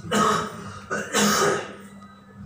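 A person clearing their throat with two harsh coughs, about a second apart.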